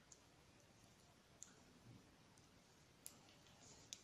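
Near silence with a few faint, scattered clicks of metal circular knitting needles as knit stitches are worked.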